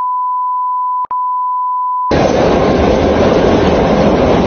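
A steady, pure 1 kHz censor bleep replaces all other sound for about two seconds and breaks off briefly about a second in. Then the loud, steady noise of a metro train car running comes back.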